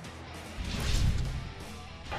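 Broadcast transition stinger over background music: a swelling whoosh with a deep boom starts about half a second in, peaks near the middle and fades out.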